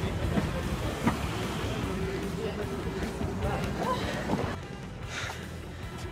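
Background music over a steady low outdoor rumble of traffic and wind on the microphone, with a held note in the middle; the sound drops quieter about four and a half seconds in.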